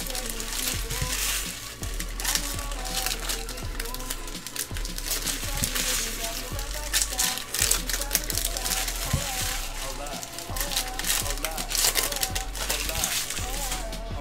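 Foil booster pack wrappers crinkling in the hands as trading card packs are opened, a run of quick crackles, over background music with singing.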